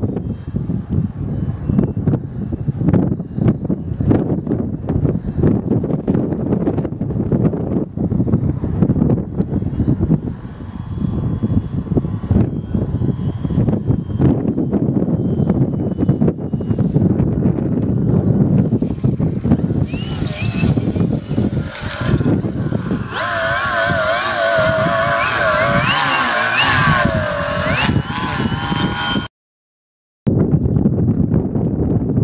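Wind buffeting the microphone, with the faint whine of a Multiplex FunCub's electric motor and propeller. About two-thirds of the way through, the motor whine turns loud, its pitch wavering up and down, then cuts off abruptly just before the end.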